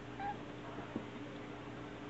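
Kitten giving a short, soft meow just after the start, then a faint tap about a second in, over a steady low room hum.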